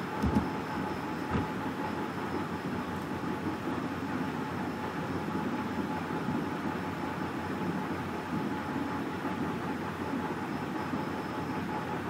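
Steady rumbling background noise with no distinct events, plus a couple of faint clicks in the first second and a half.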